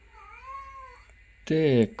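A short, high animal's call that rises and then falls, lasting just under a second, followed about a second and a half in by a man's voice, the loudest sound.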